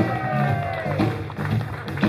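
A live blues band vamps under the band introductions: bass and drums keep a repeating low pattern beneath one long held note that sags slowly in pitch.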